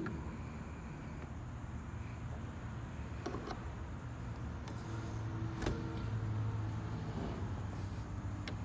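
A steady low hum with a few faint clicks and taps, the clearest a little before six seconds in, from a screwdriver working at a screw on a car's interior door panel.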